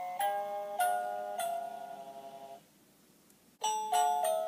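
Musical Christmas Ferris wheel decoration playing a tinkling, bell-like melody of single struck notes. The tune stops about two and a half seconds in and starts up again louder about a second later.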